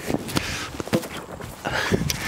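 A heavy war bow being drawn and loosed: a knock of the string on release among several short knocks and rustles of gear and clothing.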